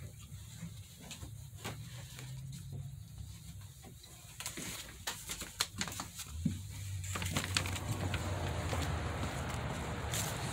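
Scattered clicks, knocks and rustling from a door being opened and a phone being handled while walking. From about halfway through, a rising hiss of outdoor air and a steady low hum come in.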